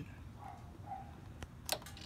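Two clicks, a faint one followed by a sharper one about a second and a half in: the motorcycle's ignition switch being turned on while the trip-meter button is held, to put the speedometer into its diagnostic mode.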